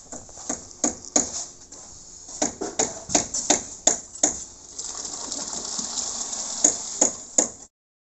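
Concrete work at a tie-beam form: irregular knocks and clatter from a worker's bucket and tools, then a steady hiss for a few seconds as wet concrete is tipped into the formwork. The sound cuts off abruptly just before the end.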